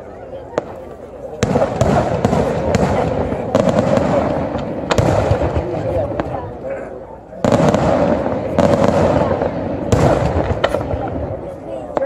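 Daytime fireworks: aerial shells bursting with dense, rapid crackling reports in a long volley that starts suddenly about a second and a half in. It breaks off briefly around seven seconds in, then a second volley starts just as suddenly.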